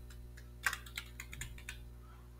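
Computer keyboard typing: a quick run of light keystrokes as a word is typed, one stroke a little louder about a third of the way in.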